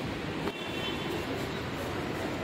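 Steady background noise of a busy city outdoors, a low even hum with no voices close by, and a faint knock about half a second in.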